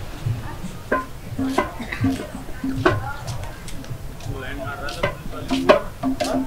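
Small hand drum played in short, pitched beats with sharp clicking strokes, in a loose rhythm of about two beats a second at times, with voices around.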